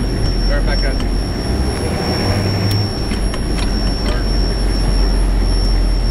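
HMMWV diesel engine running steadily under heavy wind noise on the microphone, with faint voices and a few sharp clicks mixed in.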